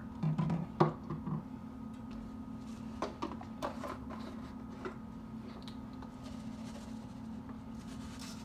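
A few light clicks and knocks of a plastic spice container being handled and opened, over a steady low hum.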